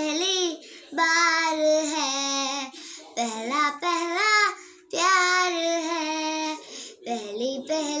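A young girl singing a Hindi film song unaccompanied, in short phrases with brief breaths between them.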